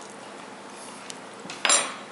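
A metal spoon set down with a short clatter on a hard surface about three quarters of the way in, after a faint click; otherwise steady room tone.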